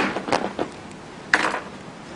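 Suitcase zip being split open with a ballpoint pen pushed along between the teeth: a few short rasps in the first half second and a louder one about a second and a half in.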